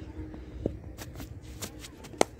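Quick, scuffing footsteps of a cricket bowler's run-up on a concrete strip, heard as a few short clicks in the second half. A single sharp knock comes about two-thirds of a second in.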